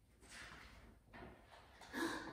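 Faint rustle of a large paper picture-book page being turned over, a soft scraping swish in two short stretches.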